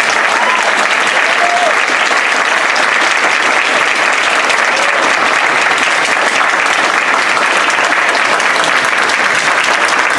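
Audience applauding steadily, with a couple of brief whoops in the first seconds.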